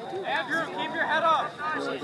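Indistinct voices of several people talking and calling out, no words clear.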